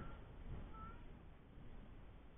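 Two faint, short, high chirps of an animal call, about a second apart, over a low steady rumble.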